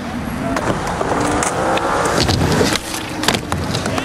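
Skateboard wheels rolling over concrete, a steady rumble that swells through the middle, with a few sharp clicks of the board.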